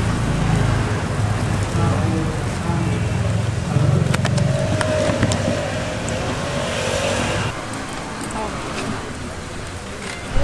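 Busy background noise: a low rumble like passing traffic, with indistinct voices and a few sharp clicks.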